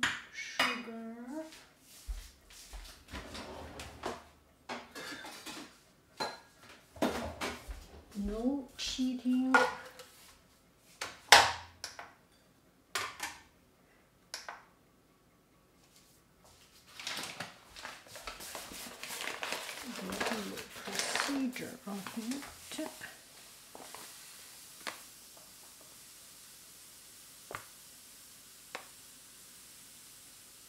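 Kitchenware being handled: pots, pans and a glass measuring jug knocked and set down in a series of clattering knocks and clinks, the loudest about 11 seconds in. Near the end the clatter stops, leaving a faint hiss and a couple of small clicks.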